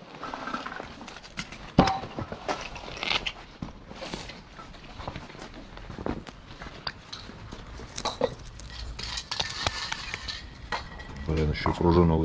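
Scattered light clicks and knocks from small objects being handled, with a voice speaking indistinctly about a second before the end.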